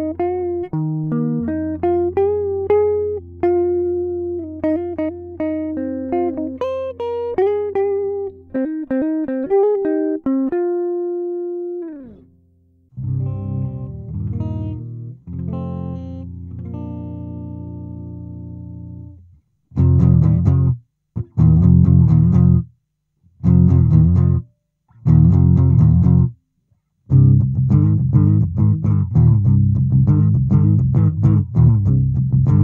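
Epiphone Les Paul Studio electric guitar played clean, recorded straight into a sound card: a single-note lead line with string bends over a held low note. About twelve seconds in, it gives way to the same recorded guitar part played back through a 15-watt GF-15 practice amp with all knobs at 5. That part has sustained chords, then short chord stabs separated by brief silences.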